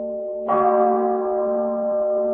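A Buddhist bowl bell struck once about half a second in, ringing on over the steady hum of earlier strikes still sounding.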